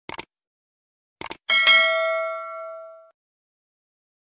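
Subscribe-button sound effects: a couple of quick clicks at the start and two more about a second in, then a single bell ding that rings out and fades over about a second and a half.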